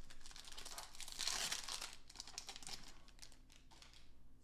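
A 2023 Panini Mosaic No Huddle football card pack being torn open by hand, its wrapper crinkling. The crinkling is loudest a little past a second in and trails off toward the end.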